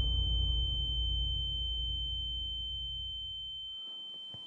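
A steady high-pitched ringing tone, the ear-ringing sound effect used to show a stunned moment, held over a low rumble that slowly fades and dies out near the end.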